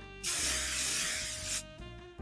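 Aerosol hairspray can sprayed in one burst of about a second and a half, an even hiss that starts and stops abruptly, with soft background music underneath.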